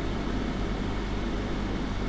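Steady low hum with even hiss: room tone picked up by the microphone, with no distinct events.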